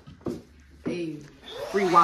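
A few short spoken words, with a steady hiss coming in near the end.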